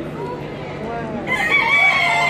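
A rooster crowing, starting a little past halfway through and still going at the end, over a background of crowd chatter.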